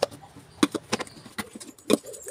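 Plastic lunch-box lid being snapped onto its container and the box set down on the counter: a handful of light clicks and knocks, the loudest near the end.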